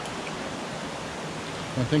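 Rushing river water, a steady even wash with no let-up.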